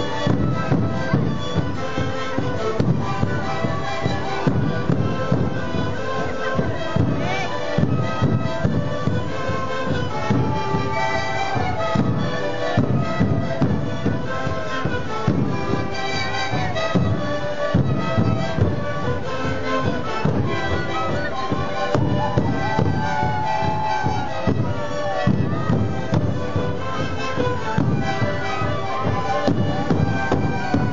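A sikuri troupe playing live: many siku panpipes sounding a melody together over a steady beat of large bombo drums.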